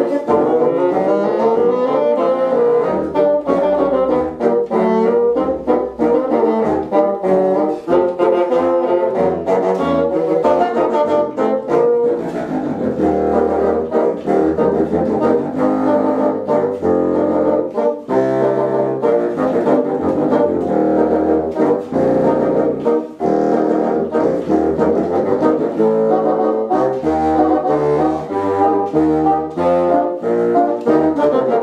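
Small student brass ensemble playing a piece: several brass parts move together over a low bass line, without a break.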